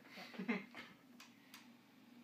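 Two sharp clicks about a third of a second apart from the controls of a reel-to-reel tape machine, over a low steady hum.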